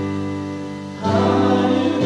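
Live worship band with drums, electric bass and guitar playing a hymn, with voices singing together. A held chord fades, then a new, louder chord comes in about a second in.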